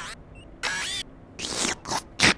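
Vacuum-cleaner sound effect of a toy-like vacuum character sucking up spilled custard through its hose nozzle: two short noisy sucking bursts, the first a little after half a second in, the second about a second and a half in.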